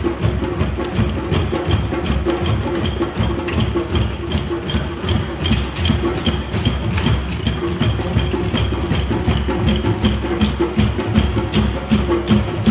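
Ensemble of djembe hand drums playing a fast, dense rhythm without a break.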